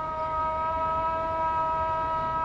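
Background music: a held chord of three steady high tones over a low rumble, like a synthesizer drone.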